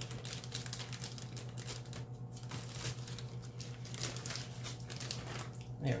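Plastic bag of thawed shredded hash browns crinkling and rustling with irregular crackles as it is handled and pulled open, over a steady low hum.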